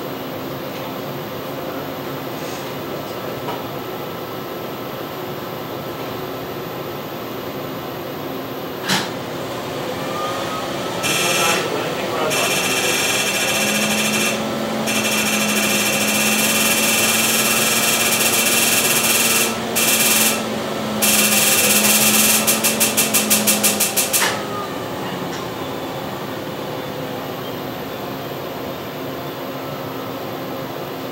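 Excimer laser firing during LASIK ablation: a loud, high, rapid pulsing buzz that starts about a third of the way in and runs for roughly thirteen seconds with a few short pauses, breaking into separate pulses just before it cuts off. A steady low hum runs under it while it fires.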